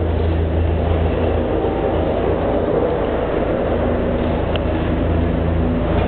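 Steady low mechanical hum of the Maokong Gondola station's machinery, with a faint tick about four and a half seconds in.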